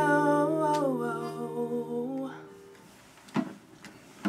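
The last strummed chord of a steel-string acoustic guitar rings out under a woman's held, wavering, hummed note that falls in pitch; both fade and stop about two and a half seconds in. Near the end come a couple of soft knocks as the guitar is handled.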